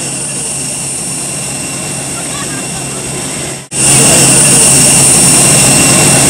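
Jet airliner turbine whine: a steady high-pitched whine over a low hum. It breaks off about two-thirds of the way through and comes back louder.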